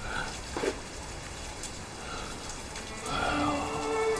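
A few short, breathy non-speech voice sounds from a person, without words. Sad string music fades in near the end.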